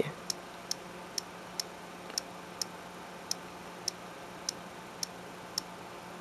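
iPod touch on-screen keyboard clicking, one short, sharp tick per key tap as a command is typed into the terminal. About eleven ticks, roughly two a second and somewhat uneven.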